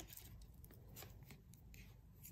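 Near silence, with a few faint, light clicks of circular knitting needles working stitches.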